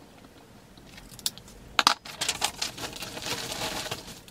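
Woven plastic sack being handled: a sharp crackle just under two seconds in, then a steady crinkling rustle as hands open and dig into it.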